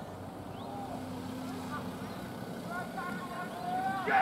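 Faint voices calling out across a rugby league field, with a louder shout building near the end, over a steady low hum.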